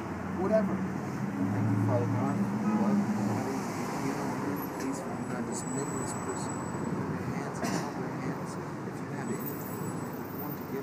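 Steady street traffic noise from passing cars, with a voice speaking quietly for the first three seconds or so.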